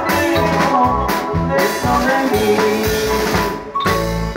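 Live marimba band playing a steady dance beat on a drum kit over marimba and keyboard. A short break comes just before the end, then the drums come back in.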